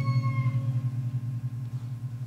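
The ringing decay of a Balinese gamelan after its last stroke: a low bronze gong hum that pulses steadily as it dies away, with higher metallophone tones fading out in the first half second.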